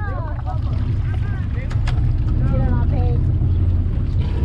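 Charter fishing boat's engine running with a steady low drone, under scattered voices of anglers on deck; a couple of sharp clicks about two seconds in.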